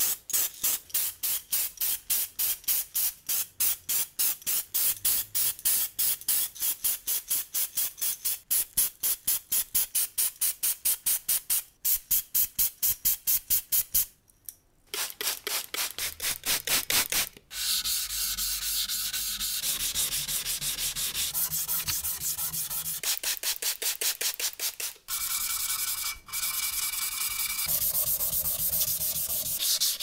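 Hand wet-sanding of an epoxy-primed metal circular-saw blade guard with abrasive paper: rhythmic back-and-forth rubbing strokes, about three to four a second, with a short break about halfway. In the later part the strokes give way to a steadier, more continuous rubbing noise.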